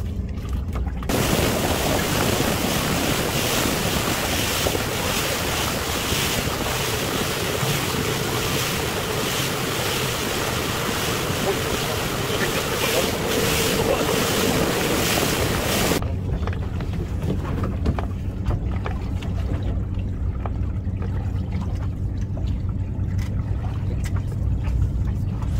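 A small fishing boat running fast under its 200 hp outboard: loud rushing wind on the microphone and water hissing past the hull. It starts suddenly about a second in and cuts off suddenly about two-thirds through. Before and after is the low steady hum of the outboard ticking over while the boat drifts.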